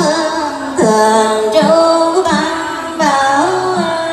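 Buddhist nuns chanting a sutra in unison in Vietnamese, women's voices holding long sung notes that slide from pitch to pitch. A short low beat keeps time about every three-quarters of a second in the second half.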